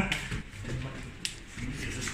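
Indistinct background voices and movement of several people practising grip-release drills in pairs, with one short sharp click a little past halfway.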